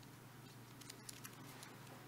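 Near silence over a low steady hum, with a few faint small ticks and crinkles of a prefilled plastic communion cup being handled by the fingers as its top is worked open.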